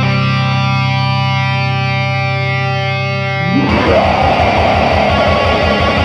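Black metal: a distorted electric guitar chord is held and rings out for about three and a half seconds, then the full band comes in suddenly with dense distorted guitar and fast, regular drumming.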